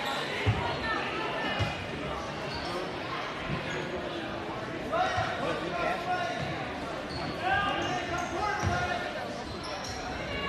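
A basketball bouncing on a hardwood gym floor during play, a handful of separate bounces spaced irregularly, with players' and spectators' voices in a large gym.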